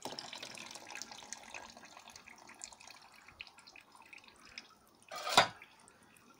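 Water dripping and trickling from a freshly pressed, wet paper-and-sawdust fire brick into the press's drip tray, dense at first and thinning out. About five seconds in, a short, louder wet sound as the brick is lifted out of the mould.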